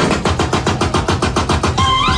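Turntablist cutting a record sample on the mixer into a fast, even stutter of about eight or nine hits a second.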